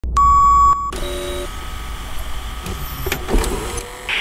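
Retro television and VCR sound effects: a loud steady electronic test-tone beep for just under a second, then a brief lower tone. A hum with static follows, with a thin high whine and a couple of sharp clicks about three seconds in.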